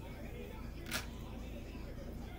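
A single short, faint tap about a second in, over a low steady hum.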